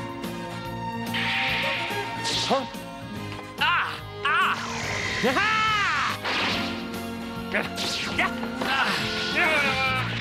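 Sword-fight sound effects in a cartoon duel: blades clashing several times and swishing with sounds that rise and fall in pitch, over background music.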